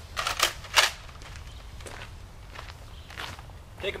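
Footsteps crunching on gravel, loudest as a few quick steps in the first second, then fainter.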